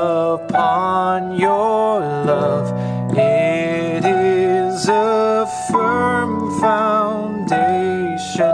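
Keyboard playing a repeated lead line in open octaves with the fifth in the middle, the figure D, E, F-sharp, A over and over, on layered pad and piano sounds. The held notes change about once a second.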